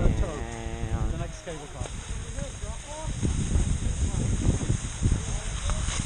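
Skis sliding and scraping over snow during a downhill run, with wind rumbling on the camera's microphone. A voice calls out briefly near the start.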